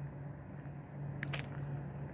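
Quiet outdoor background noise with a faint steady low hum, and a couple of brief small clicks a little past the middle.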